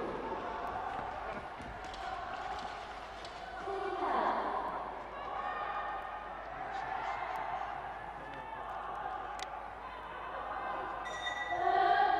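Voices calling and shouting in a large hall during a boxing bout, swelling about four seconds in and again near the end, with one sharp click a little after nine seconds.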